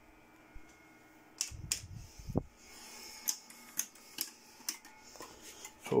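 Faint handling noise from a handheld camera being carried about: scattered clicks and a few soft knocks over a low, steady hum.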